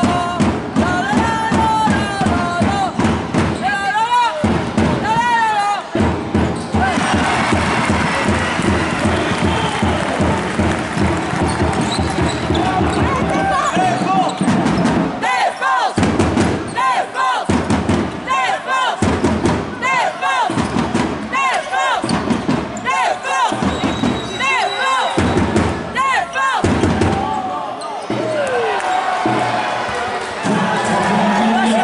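Arena sound at a basketball game: the ball bouncing on the hardwood floor, with regular dribbles about once a second in the second half, over arena music and the voices of the crowd.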